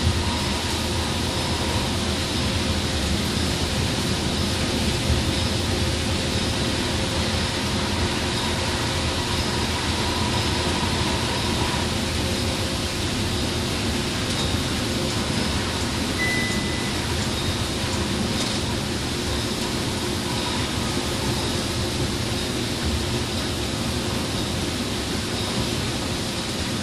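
Steady cabin noise of an express coach cruising at highway speed on a rain-soaked road: engine drone under the hiss of tyres on wet asphalt. A brief faint high tone sounds about two-thirds of the way through.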